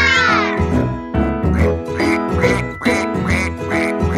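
Cartoon duck quacks over upbeat children's-song backing music: one long quack right at the start, then a run of short quacks about two a second.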